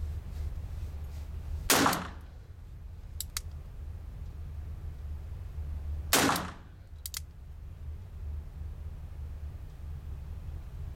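.22 caliber gun fired twice, about four and a half seconds apart, each shot sharp and short with an echo. Each is followed about a second later by a couple of light clicks.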